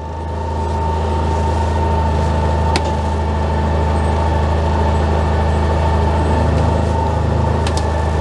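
Kubota RTV520 utility vehicle's engine idling steadily with a constant high whine, while the electric lift lowers the front plow blade. A single sharp tick about three seconds in.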